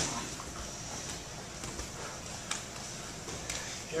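Faint rustle of cotton gi fabric and a few soft knocks as two grapplers shift position on a training mat.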